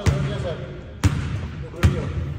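A basketball bounced on a hardwood court: three sharp bounces, near the start, about a second in and near the end.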